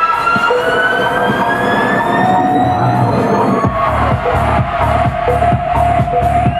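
Electronic dance music in a breakdown: the kick drum drops out while synth sweeps rise slowly in pitch, and the kick drum beat comes back in a little past halfway.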